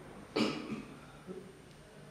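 A man coughs once, a short sharp burst about a third of a second in, followed by a faint breath.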